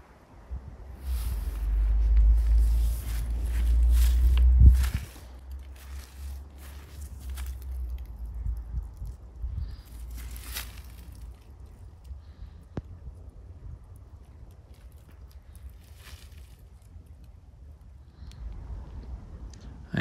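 Wind rumbling on the microphone, loudest in the first five seconds and then easing, with scattered rustles and footsteps on dry ground.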